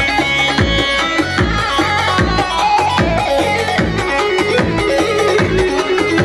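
Live Kurdish dance music played on an electronic keyboard, with a steady drum beat under a melody line.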